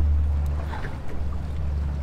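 A steady low rumble with a faint even hiss above it, with no distinct knocks or clicks.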